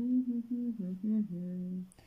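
A woman humming a short tune with her mouth closed: a few held notes that step up and down, stopping just before the end.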